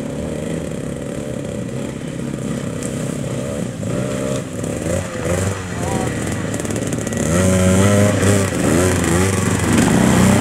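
Vintage two-stroke off-road motorcycle engines being throttled up and down as the bikes labour slowly through deep mud. The engine note rises and falls with the throttle, and a second bike's engine joins and grows louder from about seven seconds in.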